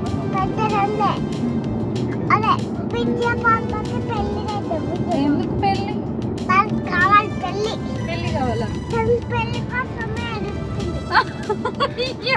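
Steady low rumble of a moving car's cabin under a small child's high voice and a woman's voice, with music in the background.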